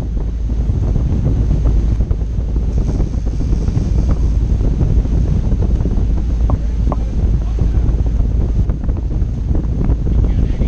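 Steady wind buffeting the microphone high on a sportfishing boat running at speed, with the boat's engines and the rush of its wake underneath.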